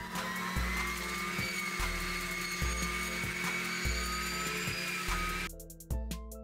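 Excavator-mounted circular saw blade cutting, a harsh hiss with a high whine that rises slowly in pitch, cutting off about five and a half seconds in. Background music with a steady beat plays underneath.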